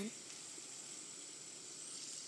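Faint steady hiss of several fidget spinners spinning on a tabletop, their bearings running freely.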